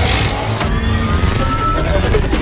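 Cinematic intro soundtrack: music over a steady low rumble, with a rushing whoosh at the start.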